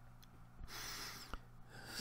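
A person drawing a soft breath in, lasting about a second, with a faint click near its start and another near its end.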